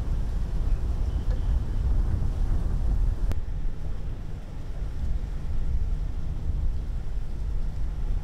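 Wind buffeting the microphone, a steady low rumbling noise, with a faint click a little over three seconds in.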